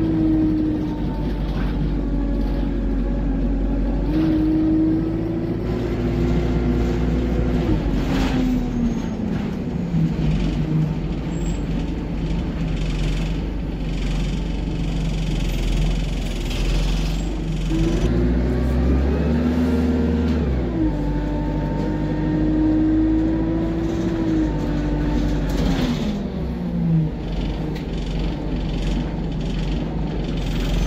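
Alexander Dennis Enviro200 bus's diesel engine and automatic gearbox heard from inside the cabin, pulling hard under kickdown: the engine note climbs about 4 s in and holds high, then drops away about 8 s in. It climbs and holds high again from about 18 s, then falls off near 26 s.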